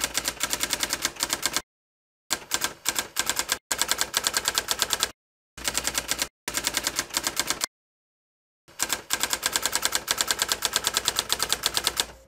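Typewriter sound effect: rapid, even key strikes at about eight a second, in runs broken by several short dead-silent gaps.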